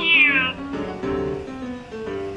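A kitten meows once right at the start, a short high call that falls in pitch, over steady instrumental background music.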